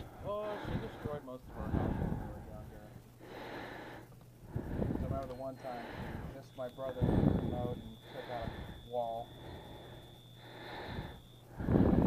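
Quiet, indistinct conversation at a shop checkout counter, with a steady high electronic tone that starts about halfway through and stops just before the end.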